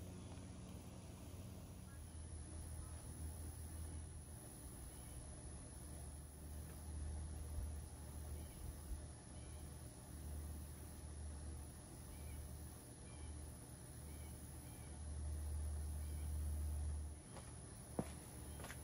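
Quiet background: a low, uneven rumble that stops about a second before the end, with faint chirps repeating roughly once a second, typical of birds.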